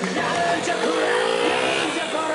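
KTM 125 Duke's single-cylinder engine revving during a stunt, its pitch climbing over about a second, with music playing over it.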